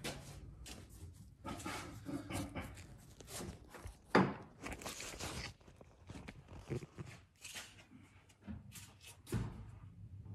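Rag wiping and hands handling things close to the microphone under a truck: scattered rustles and small knocks, with one sharper knock about four seconds in.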